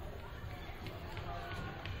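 Indistinct voices echoing around a gymnasium, with people running on the hardwood court and a few light knocks.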